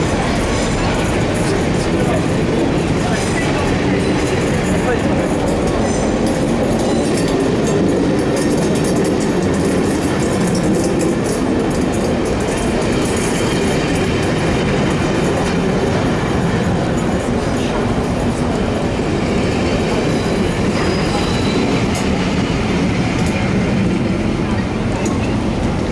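Railway passenger coaches rolling past close by along a platform: a steady rumble of wheels on the rails, with light clicks as they cross rail joints.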